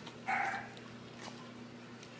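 Rottweiler puppy makes one short vocal sound about a quarter second in, with its muzzle pressed to a hand holding a treat.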